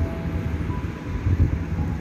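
Steady low rumbling noise of a pan of salted water with potato cubes heating toward the boil on a gas burner.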